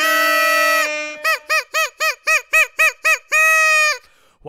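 Air horn sound effect: one long blast, then a rapid string of about ten short blasts, then another long blast that cuts off just before the end.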